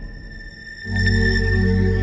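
Scouse house (bounce) dance music from a DJ mix: a thin, quieter passage, then a loud sustained bass and layered synth chords come in just under a second in.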